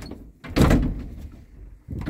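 Hand-operated swing door of an old passenger lift being shut, with a loud thud about half a second in and another beginning at the very end.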